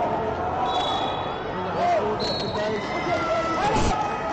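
Tournament gym ambience: many voices of coaches and spectators shouting across a large hall, with brief high-pitched squeaks or whistle tones and a thump just before the end.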